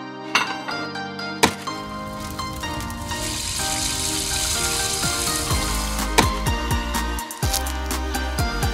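Light background music with a frying-pan sizzle sound effect laid over it for a few seconds in the middle. A kick drum joins the music near the end.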